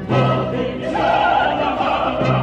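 An operatic mezzo-soprano voice singing sustained notes with wide vibrato, backed by a choir and an orchestra holding a low note beneath.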